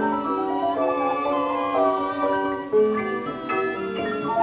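Piano and orchestra in a quick passage of short, detached notes, from a 1937 78 rpm gramophone recording with dull, cut-off treble.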